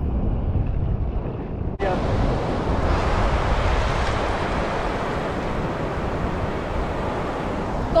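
Ocean surf washing on the beach and wind on the microphone, a steady rush of noise. For about the first two seconds it is dull and muffled, then it changes suddenly to a fuller, brighter rush.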